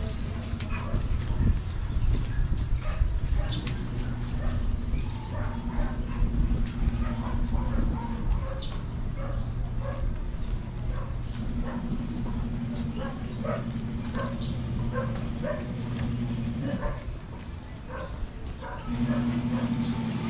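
Street ambience in a narrow alley: a steady low engine hum that fades out and comes back several times, with short voices and calls over it.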